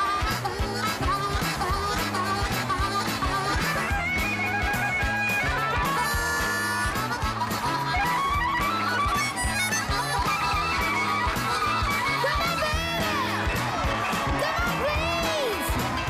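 A rhythm-and-blues band playing, with harmonica leads over a steady, repeating bass and drum groove; the harmonica lines bend up and down in pitch.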